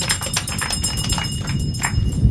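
Scattered clapping from an audience with a high metallic jingle ringing over it, both stopping just before the end.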